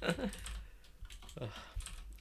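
Faint, scattered key clicks of typing on a computer keyboard, after a brief spoken "uh".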